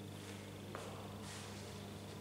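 Steady low hum, with a few soft rustles and a small click about three-quarters of a second in.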